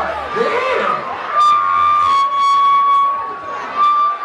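Crowd noise in a packed club with voices early on, then a steady high tone held for about two seconds from about a second in, and a shorter one near the end.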